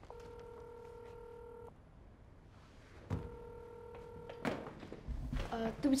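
Phone ringback tone heard through a mobile handset: two rings, each about a second and a half long, the second cut short. Near the end come knocks and a thunk from an office chair being pushed back.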